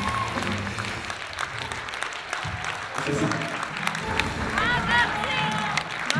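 Concert audience applauding and calling out as a band's song ends, with many scattered claps and shouted voices over crowd murmur.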